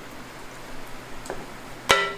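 A single sharp metallic clink with a brief ring near the end, over faint room noise.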